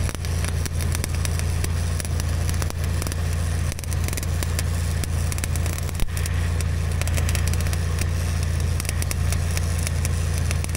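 Stick-welding arc crackling steadily as a rod burns a bead on steel, with one sharp snap about six seconds in. A steady low machine hum runs underneath.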